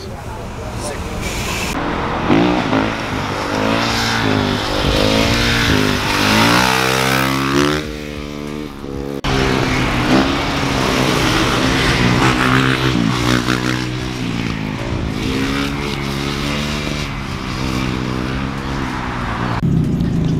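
Car engines revving up and down again and again, with one long falling pitch about seven seconds in and the sound breaking off abruptly about nine seconds in.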